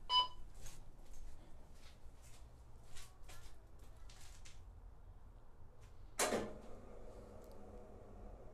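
A short electronic beep from a wheel balancer, then scattered light clicks and knocks of handling. About six seconds in comes a sharp knock, the loudest sound, followed by a faint steady hum.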